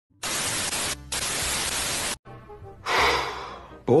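TV static hiss for about two seconds, with a short break about a second in, then cut off sharply. A quieter stretch with faint steady tones follows, and a rush of noise swells and fades just before speech begins.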